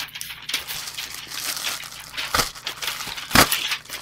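A knife cutting open a shipping package and the packaging being handled: continuous scratchy rustling and crinkling, with two sharp knocks about two and a half and three and a half seconds in.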